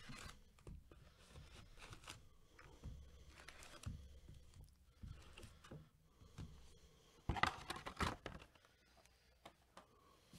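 Foil trading-card packs crinkling and rustling as they are lifted out of a cardboard hobby box and stacked, with scattered light taps; a louder burst of rustling comes a little past the middle.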